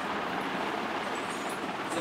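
Steady, even background noise, a hiss with no distinct sounds standing out.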